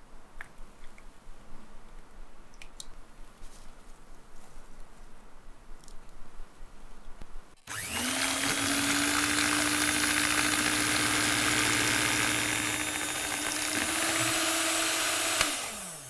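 Quiet at first with a few faint clicks, then about halfway through an electric hand mixer switches on and runs steadily, its twin beaters whipping cream into cream cheese in a plastic jug. Its pitch rises slightly near the end before it winds down and stops.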